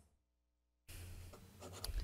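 Near silence for nearly a second, then faint room noise with soft rustling and a few light clicks.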